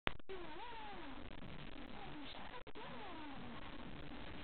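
A domestic cat meowing a few times, drawn-out calls that rise and then fall in pitch, over a steady hiss.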